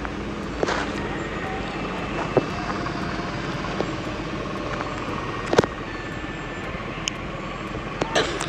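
Steady background noise with a few short, faint clicks.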